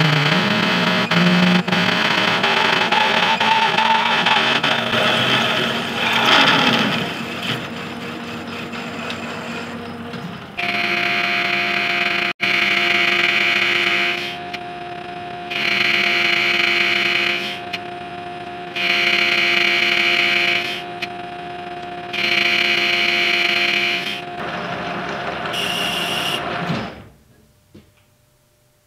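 Metal lathe drilling a ductile iron blank with a large twist drill, a harsh continuous cutting noise. About ten seconds in, a steady machine whine takes over while a boring bar cuts inside the bore, the cutting noise starting and stopping about five times, every three to four seconds. Near the end the sound drops away as the lathe stops.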